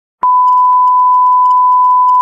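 TV colour-bars test tone: a loud, steady single-pitch beep that starts with a click about a fifth of a second in and holds unchanged, with one faint click about half a second later.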